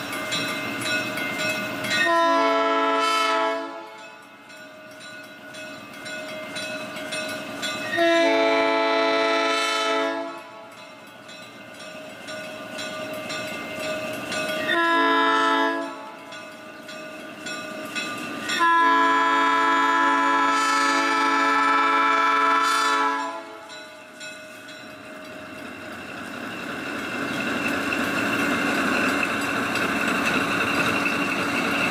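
Baldwin RS-4-TC diesel locomotive's horn sounding the grade-crossing signal: two long blasts, a short one, then a final long one. After that the locomotive's engine and wheels grow steadily louder as it draws near.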